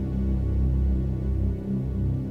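Background music: a dark, low synthesizer drone, its bass notes held and slowly shifting.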